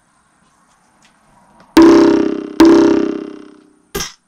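Two loud, pitched electronic synth hits a little under a second apart, each ringing out and fading over about a second, after a faint rising swell.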